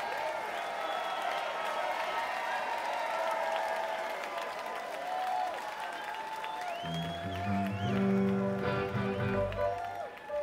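Concert crowd applauding, cheering and whistling after a rock song's final chord, with held instrument tones ringing on. About seven seconds in, a voice comes in over the PA.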